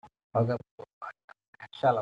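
Speech only: a man's voice in short bursts, cut to dead silence between them.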